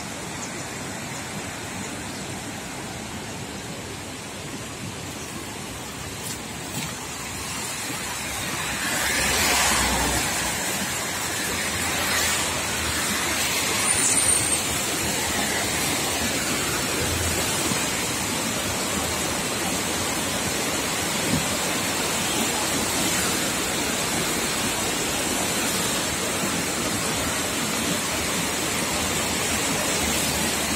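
A swollen, muddy mountain river rushing over rocks: a steady rush of white water that grows louder about nine seconds in.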